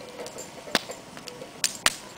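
Wood fire crackling: three sharp pops over a faint hiss, one a little under a second in and two close together near the end, the last the loudest.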